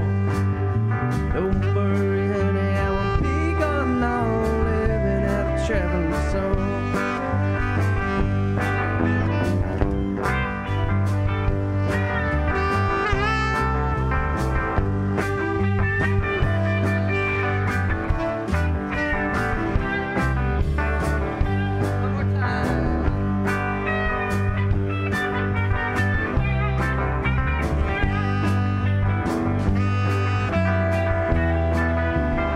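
Live band playing an instrumental passage: drums keeping a steady beat under bass and electric guitar, with a lead line bending and sliding between notes in a bluesy, slide-guitar style.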